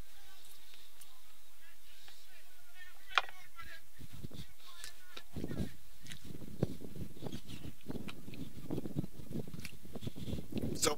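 Distant voices of players talking on an open field, with one sharp click about three seconds in. The voices grow busier in the second half.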